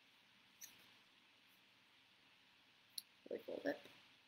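Mostly quiet room tone with two faint clicks of paper being handled and folded, one about half a second in and one about three seconds in. A brief murmured word follows near the end.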